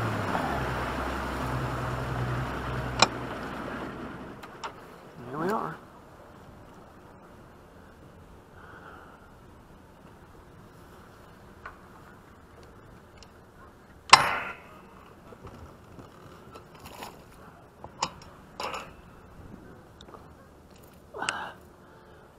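Bass boat's outboard motor and water rush dying away over the first four seconds as the boat comes off its run and stops. After that it is quiet, with scattered clicks and clunks of the bow-mount trolling motor being lowered; the loudest is a sharp clack about 14 seconds in.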